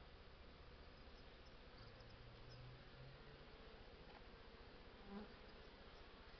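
Faint buzzing of honey bees flying around a hive entrance, swelling briefly about two seconds in.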